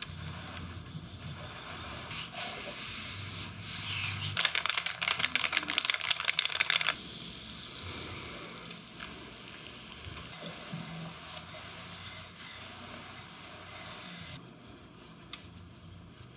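Massage sounds: a bamboo stick and hands rubbing over oiled skin and a towel on the massage table. A quick run of rapid taps comes from about four to seven seconds in.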